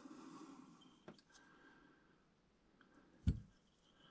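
Quiet room, broken by a faint click about a second in and one short thump a little after three seconds.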